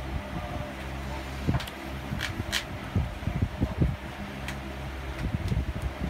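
Steady low hum of a fan or air conditioner, with a handful of short sharp clicks and taps from sleeved trading cards being handled and set down on a playmat.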